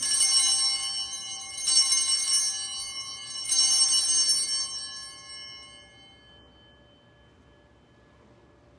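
Altar bells rung three times at the elevation of the chalice during the consecration at Mass, a bright, high jingling ring about every second and a half that dies away over a couple of seconds.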